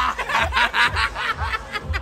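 A woman laughing in a quick run of short bursts, over background music with a steady bass beat.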